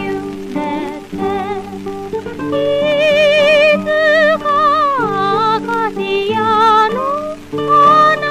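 A woman singing a vintage early-Shōwa Japanese song with wide vibrato over guitar accompaniment, with short breaks between phrases.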